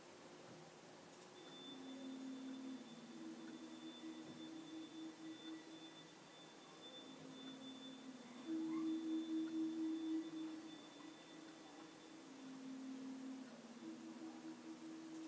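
A faint, low whistling tone from a sleeping Jack Russell terrier's nose as it breathes, switching between a lower and a higher pitch every two seconds or so in a slow breathing rhythm, loudest around the middle.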